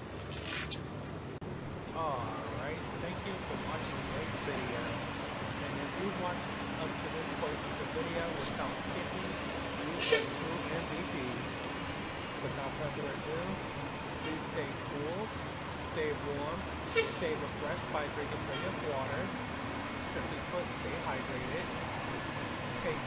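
New Flyer DE60LFR diesel-electric hybrid articulated city bus running steadily at a stop, with people's voices around it and two short sharp hisses of air brakes, about ten and seventeen seconds in.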